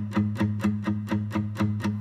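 Background song between vocal lines: a guitar picking a steady run of notes, about eight a second, over a repeating low note pattern.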